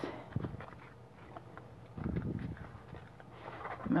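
Tarot deck being taken out of its glitter-covered cardboard box by hand: scattered light taps and rustles, with a longer scrape of cards sliding about two seconds in.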